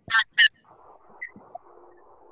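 Two short, high-pitched voice fragments come through a student's open microphone on an online call. After them there is a faint, steady hiss from the open line.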